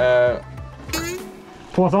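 Background music, with a short vocal sound at the start and a quick rising sweep about a second in.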